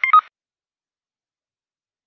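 A quick run of short electronic beeps in the first quarter second, then dead digital silence.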